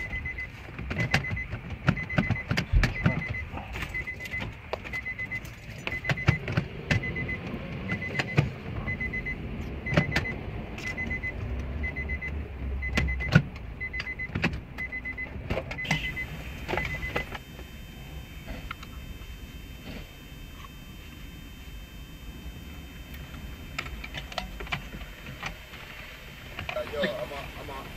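Clicks, knocks and rattles of plastic dash parts and car radio units being handled and fitted into a car's centre console. Under them a short high electronic beep repeats evenly, then stops about two-thirds of the way through.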